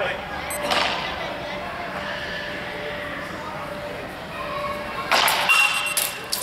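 Longswords striking and clashing in a quick flurry of sharp hits near the end, one hit ringing briefly. Voices carry on in the background throughout.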